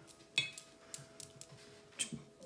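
A small hard clink about half a second in, followed by a few faint taps: a painting tool knocking against the watercolour palette as it is put down or picked up.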